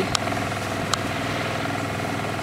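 Small sailboat's motor running steadily at a low, even speed, with two faint clicks in the first second.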